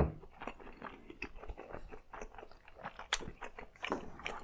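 Close-miked chewing of a mouthful of glazed eel nigiri: a run of soft, irregular mouth clicks, with one sharper click about three seconds in.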